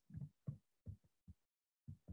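Near silence, broken by about five faint, very short blips spread through the pause.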